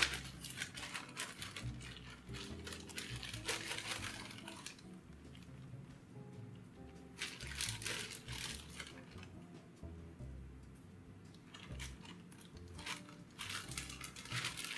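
Clear plastic zip-top bag crinkling in several bursts as it is handled and rummaged through, with faint music underneath.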